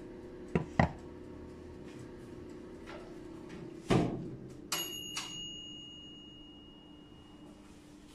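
Countertop electric oven being handled: light clicks, a knock about four seconds in, then two clicks of its control knob and a bell-like ding that rings out and fades over about two seconds, the oven's timer bell sounding as it is turned off. A faint steady hum runs underneath.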